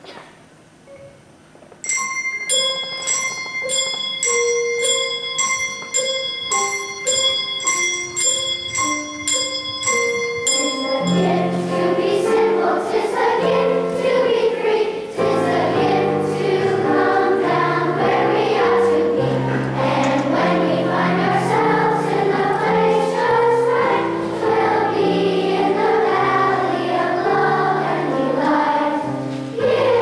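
Children's choir singing a Christmas song with instrumental accompaniment. The accompaniment begins alone about two seconds in, with evenly paced notes, and the voices come in about nine seconds later.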